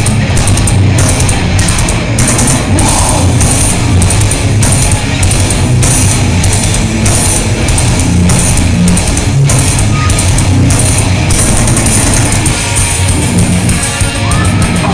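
Heavy metal band playing live and loud: distorted electric guitars and bass over a drum kit hitting a steady fast beat with cymbals, picked up from within the crowd.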